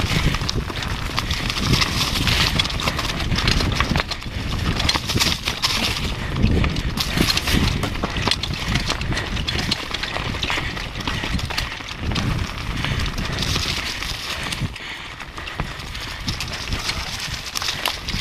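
Downhill mountain bike clattering over a rough, rocky trail at speed: a dense, uneven run of knocks and rattles from the frame, chain and tyres, with wind rumbling on the camera's microphone.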